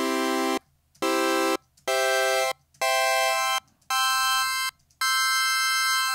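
Ableton Meld synth's chord oscillator playing a sawtooth chord on C six times in short, evenly spaced notes while the inversion macro is turned up. The voicing climbs higher over the repeats.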